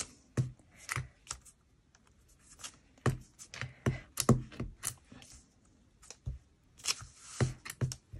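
Clear acrylic stamp block dabbed onto an ink pad and pressed down onto paper on a table: a scatter of short, irregular clicks and taps, with a little paper rustle between them.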